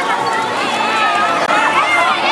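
Many children's voices shouting and chattering at once, a dense, continuous din of kids at play.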